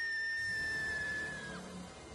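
A long, high-pitched scream held on one note, which dips and breaks off about one and a half seconds in. A low droning music bed comes in beneath it about half a second in.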